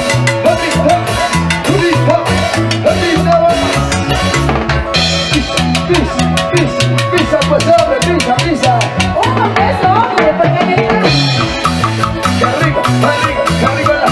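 Live band playing Latin tropical dance music: a steady drum kit and timbales beat under an electric guitar and keyboard melody.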